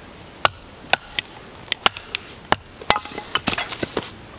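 A wooden baton striking the spine of a Battle Horse Knives Battlelore fixed-blade knife to split a stick lengthwise: sharp, dry knocks at irregular spacing, about two a second, with a quicker run of cracks near the end.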